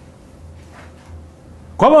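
Quiet room tone with a faint low hum for most of the stretch, then a man's voice starts speaking loudly near the end.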